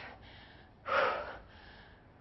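A woman's single hard, breathy breath about a second in, from the exertion of a set of backward lunges with dumbbells.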